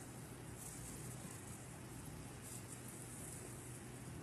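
Faint steady hiss over a low electrical hum, with slightly brighter hiss about half a second in and again past two seconds.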